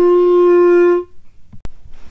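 Clarinet playing open G, with no keys pressed and no tone holes covered: one steady held note about a second long that then stops.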